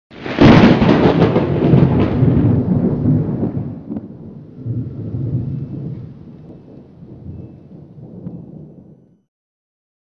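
A thunderclap: a sudden loud crack, then a long rumble that swells once more about halfway through and dies away before the end.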